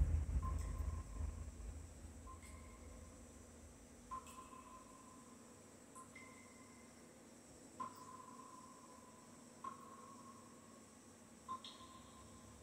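The last of the music dies away through a TV soundbar, leaving faint, short, high pings repeating about every two seconds, the quiet closing ambience of the music video.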